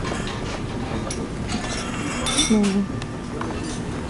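Tableware clinking: cutlery, plates and glasses being handled, over a steady low background hum. A short voice comes in about two and a half seconds in.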